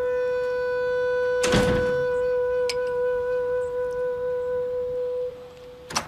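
Background score: a flute-like woodwind holds one long steady note, then breaks off near the end. A brief rushing noise comes about a second and a half in.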